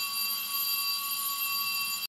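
Fire alarm sounding a continuous high-pitched tone, steady and unbroken.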